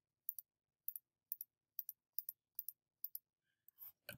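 Computer mouse button clicking in a run of light, quick clicks, about two to three a second, as selection clicks are made one after another.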